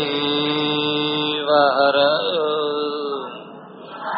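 A man chanting a Sanskrit invocation in long, held notes. One note is sustained, then a second phrase dips briefly in pitch, is held, and fades away near the end.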